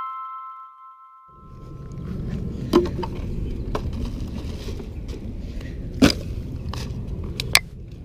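The last note of background music rings on and fades out in the first second or so. Then a steady low rumble with scattered sharp clicks and knocks, the loudest about six seconds in, from plastic litter and a plastic trash bag being handled as the litter is bagged.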